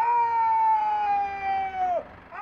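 A bugle sounding one long held note that scoops up into pitch at the start, sags slightly in pitch, and cuts off after about two seconds.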